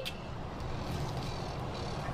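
Steady, low outdoor background noise: a rumble with no distinct events, like traffic around a parking lot.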